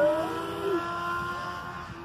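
Electric motor and propeller of a small RC aircraft flying overhead, giving a steady high whine that rises briefly at the start and then fades a little.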